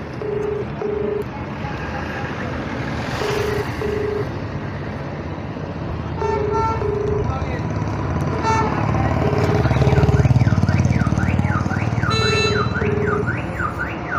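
Indian telephone ringback tone through a phone's speaker: a low double ring, two short beeps about every three seconds, repeating five times while the called number rings without being answered. Road traffic runs underneath, with a couple of horn toots, a passing truck that is loudest about ten seconds in, and a rising-and-falling warbling tone like a car alarm from about nine seconds.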